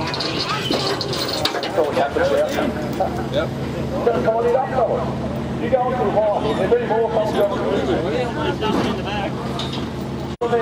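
Several voices talking at once, not directly at the microphone, over a steady low engine hum.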